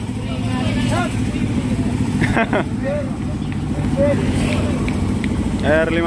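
An engine idling with a steady low rumble, with short bits of people's voices over it.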